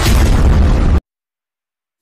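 Loud boom-like impact sound effect of a TV channel logo ident, with a deep rumble that cuts off abruptly about a second in, followed by complete silence.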